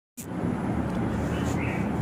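Steady background noise with a low hum, starting just after the very beginning and continuing until the narration starts.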